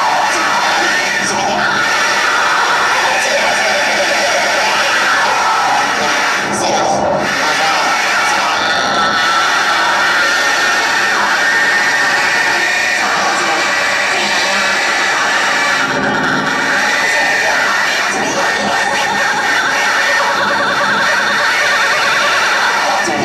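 Live noise-rock: a bowed violin in a loud, dense, unbroken wall of harsh sound.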